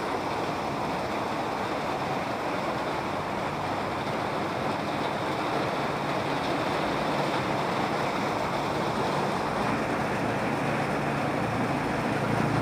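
Heavy rain pouring steadily onto a corrugated metal roof and the road, a dense, even hiss.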